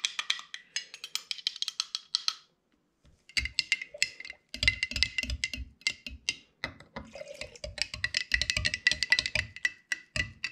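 A stirrer clinking rapidly against the inside of a glass jar as dye is mixed into shellac. The glass rings faintly under the strikes, with a brief pause about a third of the way in and occasional duller knocks later on.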